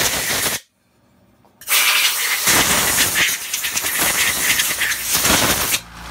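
Compressed-air blow gun blowing sandblasting grit off small freshly blasted steel plates. A short blast stops about half a second in, then after a pause of about a second comes a long steady hiss of about four seconds that cuts off just before the end.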